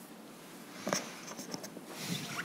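Quiet room tone with a sharp click about a second in, followed by a few lighter clicks and rustling: small handling noises.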